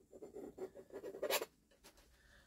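Metal palette knife scraping oil paint across a canvas in a run of short strokes, the sharpest one just before they stop about a second and a half in.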